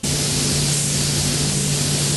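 Automotive paint spray gun hissing steadily as base coat colour is sprayed, the air switching on abruptly as the trigger is pulled. A steady low hum runs underneath.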